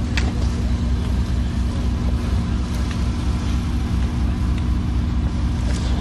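A motor vehicle's engine running nearby, a steady low rumble with a constant low hum.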